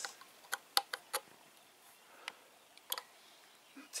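Light, irregular clicks and taps from hands working at an air rifle's telescopic sight, with three close together about half a second to a second in and a few more spread out after.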